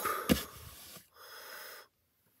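The last instant of a loud shout, then a sharp smack about a third of a second in, followed by a short, forceful breath into the microphone near the middle.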